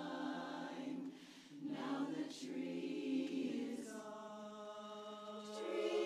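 Women's barbershop chorus singing a cappella in close four-part harmony, holding sustained chords. There is a brief break for breath about a second in, then a new phrase that swells louder near the end.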